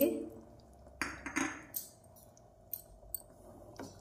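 Kitchen utensils clinking and scraping against a steel cooking pot: a couple of louder scrapes about a second in, then a few light knocks.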